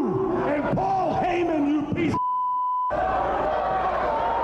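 A man yelling into a handheld microphone, with a crowd behind him. About halfway through, a steady high-pitched censor bleep replaces all other sound for under a second, blanking out a word.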